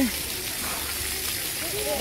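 Steady hiss of splash-pad water jets spraying, with the falling spray splattering onto the wet pad.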